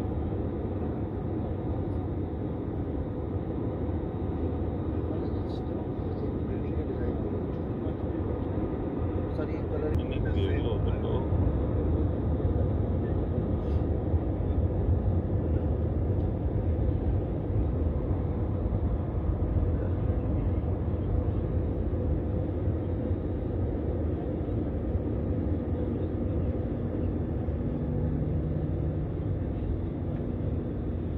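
Steady low rumble of jet engines and airflow heard inside an airliner cabin during descent, getting slightly louder about ten seconds in. A low hum joins near the end.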